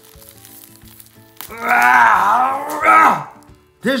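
A man's long wordless vocal groan. It starts about a second and a half in and lasts about a second and a half, its pitch dipping and then rising. It sits over quiet background music.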